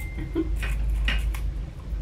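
Crisp caramel wafer cookie crunching as it is bitten and chewed: a few short crunches around a second in.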